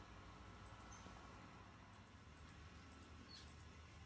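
Near silence with a few faint, short, high squeaks from a green-cheeked conure being scratched on the head, about a second in and again past three seconds in.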